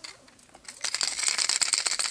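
Hard plastic topwater fishing lures and their treble hooks clicking and rattling against each other and a plastic tackle box as they are handled: a dense run of quick clicks that starts about a second in, after a brief lull.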